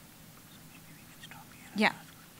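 Quiet room tone with faint murmured voices, then a man's spoken "yeah" near the end.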